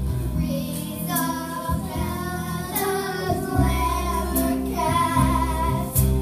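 A group of children singing a show tune together over instrumental accompaniment with a steady bass line.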